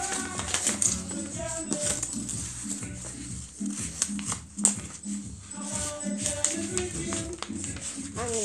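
Music playing in the room, with paper rustling and crackling as a sheet of white paper is handled and folded.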